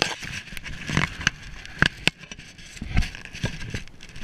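A landing net being handled in shallow water among reeds and grass: irregular clicks, knocks and scrapes over rustling and light splashing, about half a dozen sharp knocks in all.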